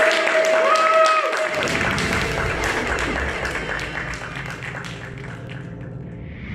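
Audience applause with cheering voices, including a high cheer about a second in; the clapping thins and fades toward the end.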